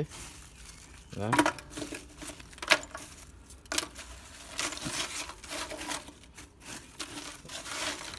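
Gloved hand raking through leftover charcoal and ash in a metal grill tray. Chunks of charcoal scrape and clink, with sharp clinks about three and four seconds in, as the large pieces that are not fully burnt are picked out of the ash.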